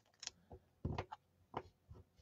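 Faint small clicks and taps from red rubber cling stamps being handled and peeled from their clear plastic storage case, about six in all, the strongest about a second in.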